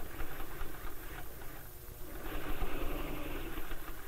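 Electric sewing machine running as it stitches a zipper placket. It runs in two stretches with a brief lull a little before the middle.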